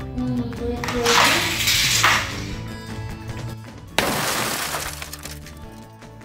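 Background music throughout, with two loud shattering crashes: one about a second in that lasts about a second, and a sharper one about four seconds in that dies away over about a second.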